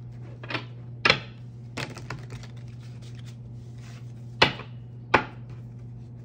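A deck of round tarot cards being handled and knocked against a wooden desktop: about six sharp knocks, the loudest two close together about four and a half and five seconds in. A steady low hum runs underneath.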